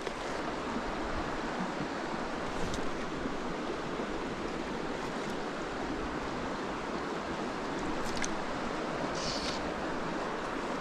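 Shallow stream running over rocks in riffles: a steady rushing of water.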